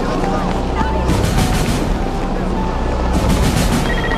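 Low, steady tense background music under a murmur of voices, with short held tones rising above the drone.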